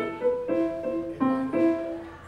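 Solo grand piano playing a short series of chords, about four struck in turn, each left to ring and fade.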